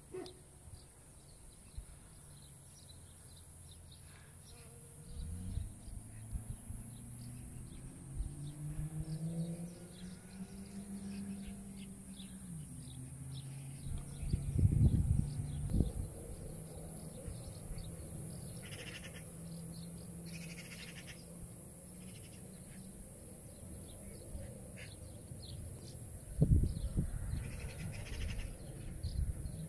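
Outdoor meadow ambience: a steady high hiss with scattered short chirps and ticks. Through the middle runs a low droning hum that rises in pitch. Two loud rumbling buffets come at about a quarter of a minute and again near the end.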